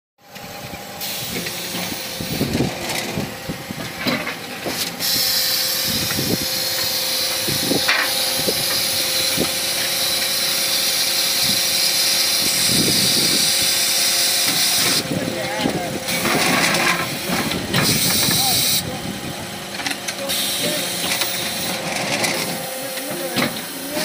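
Terrazzo tile press line running: a steady machine hum with a loud high hiss that cuts out briefly twice, and scattered knocks and clanks.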